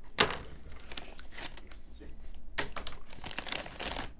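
Crinkly plastic Doritos chip bag rustling in irregular bursts as a hand rummages inside it, picking through for whole triangular chips.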